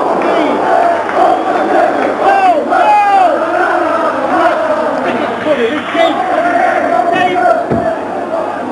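Football crowd on the terraces, many voices shouting and chanting together.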